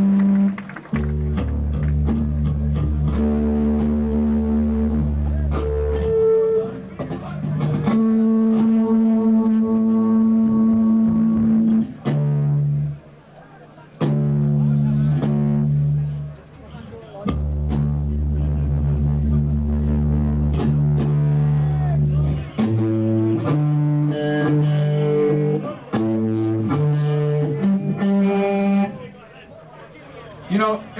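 Electric guitar and bass guitar being retuned lower between songs: single low notes and chords are let ring for several seconds at a time, broken by short pauses, with quicker plucked notes checked against each other near the end.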